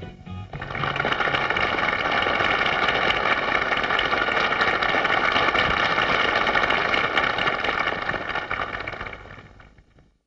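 Studio audience applauding and cheering, a dense clapping din that holds steady and then fades away near the end.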